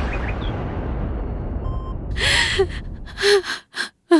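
A woman crying, with loud gasping sobs about two seconds in and again twice near the end. They come over a low rumbling sound effect that fades away over the first few seconds.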